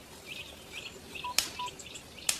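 Short high chirping calls repeating about four times a second, with a sharp click about one and a half seconds in and two brief steady beeps on either side of it.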